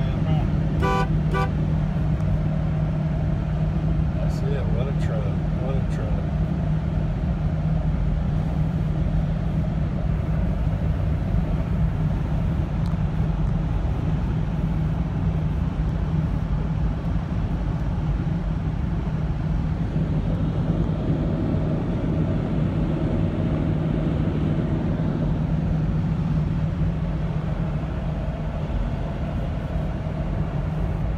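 Inside the cab of a Ford F-350 Super Duty with a Triton V10 at highway speed: a steady engine and road drone. About a second in, a short run of evenly pulsed tones sounds over it.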